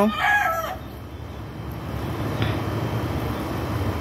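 The end of a rooster's crow, a drawn-out pitched call falling slightly and cutting off within the first second. After it there is only a low steady background rumble.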